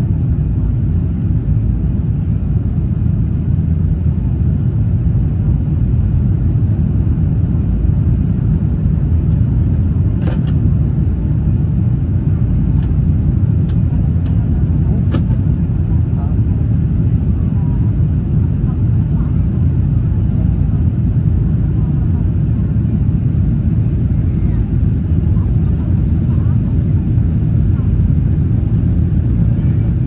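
Steady loud cabin rumble of a Boeing 777-300ER's GE90 jet engines and airflow as the airliner climbs out after takeoff, heard from a window seat, with a few faint clicks around the middle.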